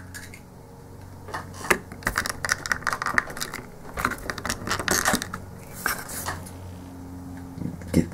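Clicks and rattles of a small plastic action figure and its plastic display stand being handled as the figure is pushed onto the base, a cluster of quick knocks through the middle of the stretch.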